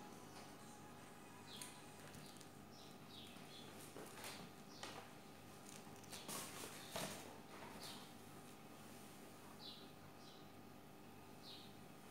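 Faint room tone with short, high chirps of a small bird every second or two, and a few soft clicks near the middle.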